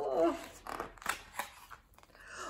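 A short vocal sound, falling in pitch, at the start. Then the paper crackle and flip of a picture book's page being turned, with a few sharp clicks.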